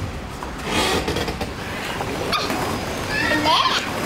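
Children playing: unworded shouts and chatter of young kids, with high-pitched squeals in the last second or so.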